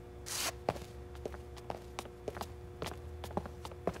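Cartoon footsteps sound effect: light steps at about two a second, over a soft steady chord of three held tones that stops just before the end.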